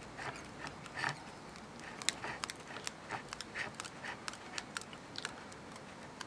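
Cotton thread being wound around a sardine head on a hook, heard as faint, irregular small ticks and rustles of the thread and fingers on the bait.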